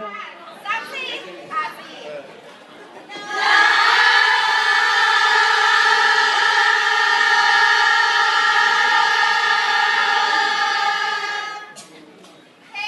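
A group of voices, first chattering, then joining in one long held note together for about eight seconds before it fades off.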